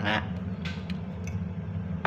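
A man tasting spicy instant noodles, with a few short, soft mouth sounds of slurping and chewing. A steady low hum runs underneath.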